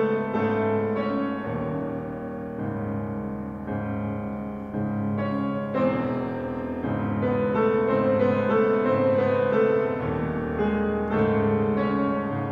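Steinway grand piano playing a classical passage, with a low figure that repeats about once a second beneath held chords.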